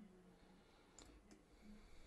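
Near silence with a couple of faint computer clicks about a second in, from working a mouse and keyboard in 3D modelling software.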